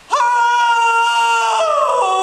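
A woman's loud, long wailing cry, held on one high pitch for about a second and a half and then sliding down: an actress's staged wail of grief.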